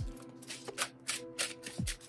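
A tarot deck being shuffled by hand: a run of quick, irregular papery flicks of cards, over soft background music.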